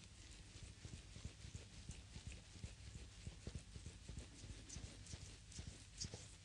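Faint, close-up sound of hands working the creamed sole of a foot in a reflexology massage: skin rubbing with many soft, irregular thumps as the fingers press and shift.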